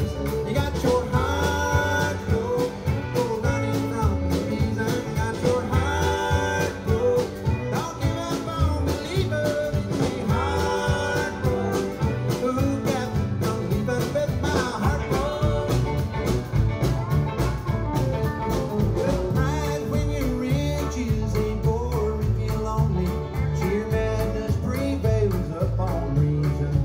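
A bluegrass band playing live through a PA: banjo, acoustic guitars, fiddle and drums, with a vocal line sung over them.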